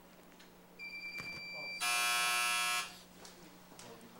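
An electric timer buzzer in a council chamber, signalling the end of a minute of silence. A high steady beep lasts about a second, and then a louder, harsh buzz follows straight on for about another second.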